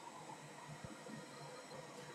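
Faint steady hiss of room tone, close to silence, with one soft tap a little under a second in.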